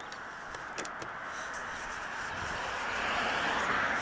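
A car passing on the street: tyre and road noise swelling gradually to its loudest near the end, then beginning to fade. A couple of light clicks sound about a second in.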